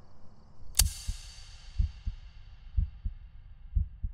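A low heartbeat sound effect: paired thumps, lub-dub, about once a second. About a second in, a sharp hit opens the beat, and its ringing tail fades away over the next few seconds.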